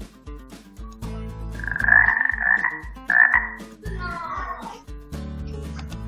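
Jungle-themed quiz-game background music with a steady beat, overlaid with animal calls: a rough call about two seconds in, a shorter one a second later, and a wavering call near four seconds.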